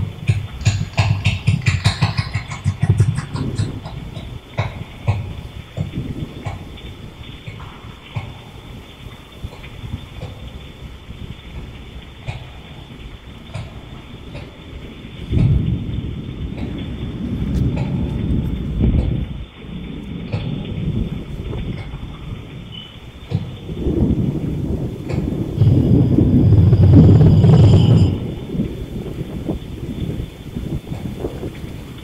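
Deep rumbling that swells twice: once about halfway through, and again more loudly in the last third before cutting off suddenly. A patter of clicks and crackles comes before it at the start.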